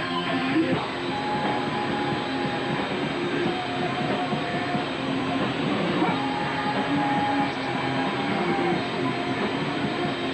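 Rock band playing live, led by electric guitar, with held notes over a dense, continuous wash of sound.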